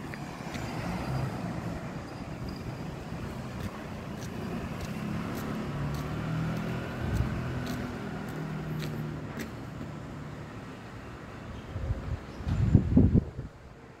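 Street traffic: a passing motor vehicle's engine runs steadily under a background hum of the road. A few loud, low thumps come near the end.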